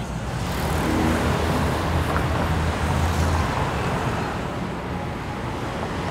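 Road traffic on a busy city street: a steady rumble of passing cars, with one vehicle's low engine rumble swelling and then fading within the first few seconds.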